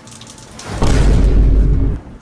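A loud, deep boom with a music sting, coming in just under a second in and cutting off suddenly near the end.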